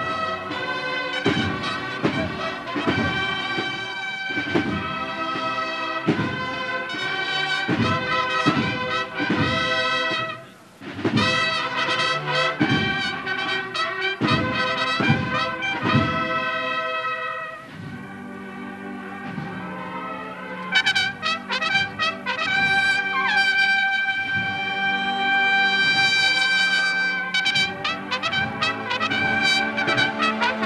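A cornet and drum band playing a processional march: bugles over regular drum strokes. About two-thirds of the way through, the drums drop out for long held bugle notes and short repeated calls.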